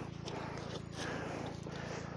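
Quiet open-air background with a low steady hum underneath and faint rustling, as of steps on dry grass and soil.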